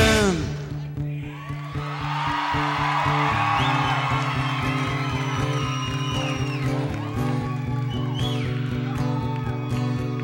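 Live rock concert recording: a song ends with a falling chord at the start, then the audience cheers and whoops over a low note repeating in a steady pulse.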